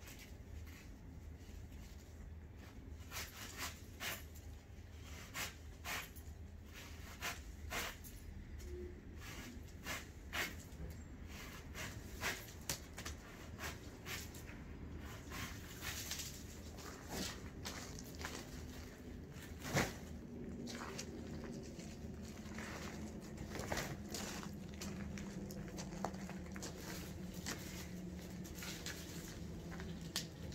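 Dead leaves being cut and snapped off a yucca: irregular sharp snaps and crackles, roughly one every second or two, with one sharper crack about two-thirds of the way through.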